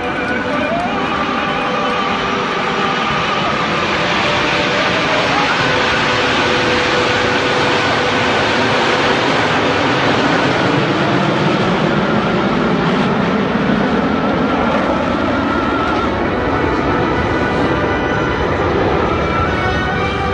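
Jet engines of the Frecce Tricolori's formation of Aermacchi MB-339 jet trainers passing overhead: a steady, loud rushing roar that swells over the first few seconds and then holds, its pitch slowly sweeping down and back up as the aircraft go by.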